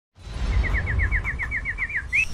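A rapid series of about a dozen short, high chirps, each dropping slightly in pitch, about eight a second, like a small bird's trill, over a steady low rumble. It is a bird-call sound effect for an animated logo.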